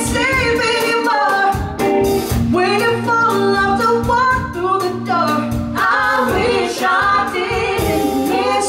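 A woman singing live with gliding vocal runs over backing music: held chords, a bass line and a steady beat.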